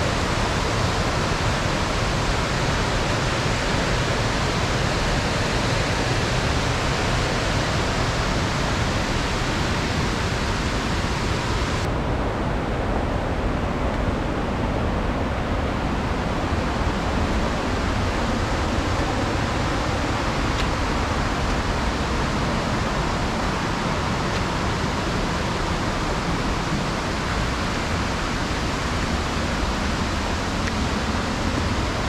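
Steady rushing of a waterfall: an even, loud noise of falling water. About twelve seconds in, the sound abruptly turns duller for a few seconds before its full brightness returns.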